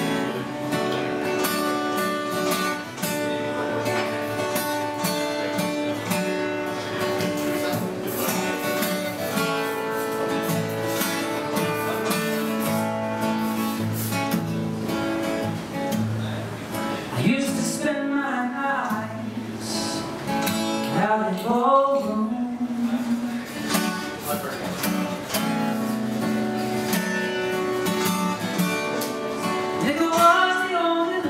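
Solo steel-string cutaway acoustic guitar strummed in a slow, steady rhythm, playing a song's instrumental opening. Around two-thirds of the way in, a man's voice slides through a few wordless notes over the chords.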